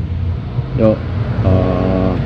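Honda NSR 150 RR's single-cylinder two-stroke engine idling steadily at standstill, a low even burble, with short bits of the rider's voice over it.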